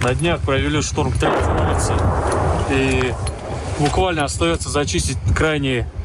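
Men's voices speaking in field audio, interrupted about a second in by a loud rushing noise lasting around two seconds.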